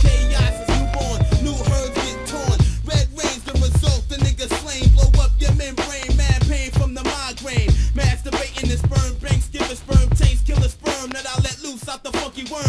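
1990s boom bap hip hop track: a heavy kick-and-snare drum beat with deep bass, with a rapped vocal over it.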